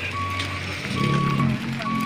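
A vehicle's reversing alarm beeping at one steady pitch, about three short beeps in two seconds, with a low engine-like hum underneath.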